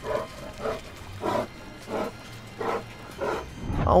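A wild animal calling: about six short calls, evenly spaced roughly every half second to second, over faint background music.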